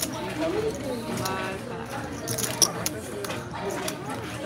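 Casino table ambience: soft background voices with casino chips clicking against each other as they are handled and placed, a few sharp clicks about two and a half seconds in.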